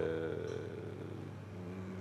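A man's drawn-out, level-pitched 'ehhh' hesitation that fades out in the first half-second, leaving a steady low hum.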